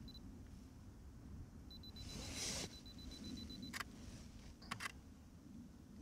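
Canon R5 camera on a tripod: a short high beep, then about two seconds of rapid self-timer beeping that ends in a shutter click. Two more quick shutter clicks follow about a second later.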